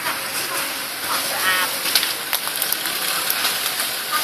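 Leaves and twigs of a java plum tree rustling and crackling as a long bamboo pole is jabbed up into the branches to knock down fruit. The sound is a run of sharp clicks from about halfway in, over a steady hiss.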